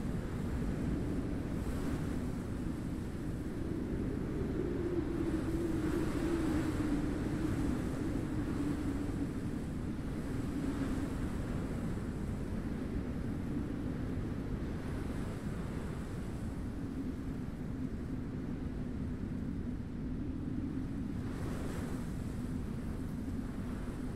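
Wind ambience: a steady rushing wind with a low moaning tone that wavers slowly in pitch and swells a few seconds in.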